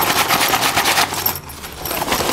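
Hands rubbing and scrunching Fjällräven Kånken backpack fabric, first the Vinylon F of the Mini and then the waxed G-1000 of the No.2: a rapid, scratchy rustle that drops away about a second and a half in and picks up again near the end. The two fabrics do not sound too different.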